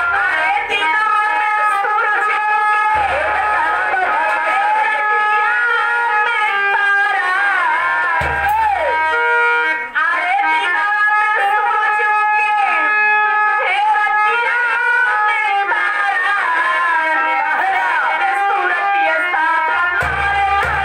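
Live stage music: a loud, sustained melody with a fast run up and down in pitch a little before halfway. A few low thumps from a drum sound near the start, about three seconds in, and about eight seconds in.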